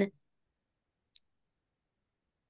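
Dead silence in a pause between spoken words, broken by a single faint, very short click about a second in; the last of a spoken word trails off at the very start.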